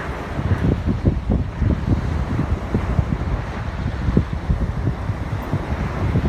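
Wind blowing across the microphone in uneven gusts, a low rumble.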